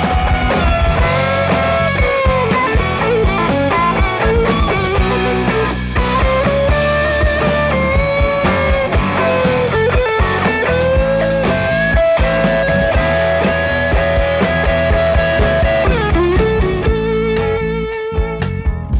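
Instrumental break of a blues-rock song: a lead electric guitar plays a solo line of held, bent notes with vibrato over bass and drums.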